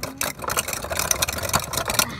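A rough, rattling car-engine noise for the toy pickup truck driving off.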